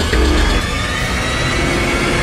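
Dramatic cinematic intro music with a heavy low rumble and held tones.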